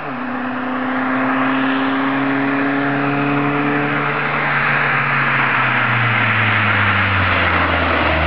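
Peugeot 206 rally car engine running hard at speed as the car approaches, its note held fairly steady and growing louder until the car is close by near the end.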